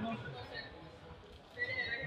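Indistinct voices of people in the room, with a short high-pitched call near the end.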